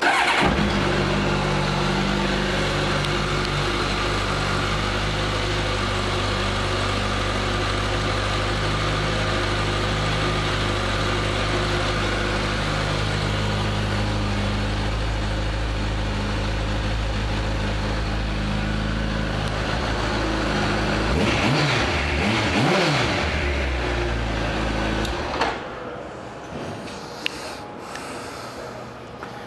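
A 2000 Honda CBR1100XX Blackbird's inline-four engine starts up and idles steadily. Near the end it is revved briefly, then switched off a few seconds before the end.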